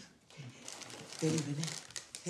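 Light rustling and small sharp clicks as a person gets up from a chair at a set table, with a short spoken sound about halfway through.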